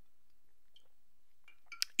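Quiet room tone, with a couple of short sharp clicks near the end.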